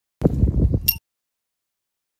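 Under a second of low, rumbling handling noise as an ultralight tent is lifted and shaken, ending with a light clink. The sound cuts in and out abruptly.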